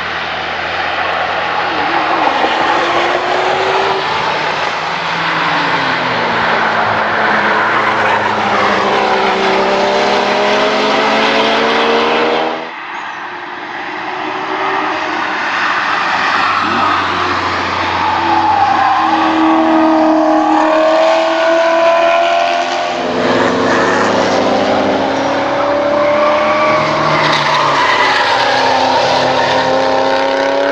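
Ford Crown Victoria's V8 accelerating out of a corner, its note climbing. A cut then brings in a Chevrolet Camaro's V8 accelerating, its pitch breaking once and climbing again, and about two-thirds of the way in another car's engine accelerating after a second cut.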